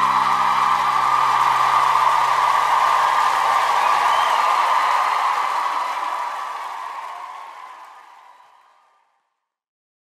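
Audience applause fading out by about nine seconds in, with the last acoustic guitar chord ringing out beneath it over the first few seconds.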